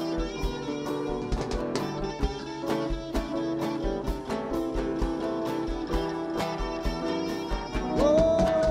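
Live rock band playing an instrumental passage: guitar lines over bass and keyboards, with a drum kit keeping a steady kick-drum and cymbal beat.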